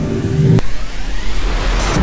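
Background music breaks off with a sharp click about half a second in, followed by a rushing noise that swells and peaks near the end.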